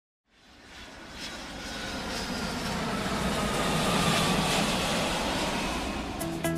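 Airplane passing by: engine noise that swells in from silence and builds over several seconds, with a faint whine that slowly falls in pitch.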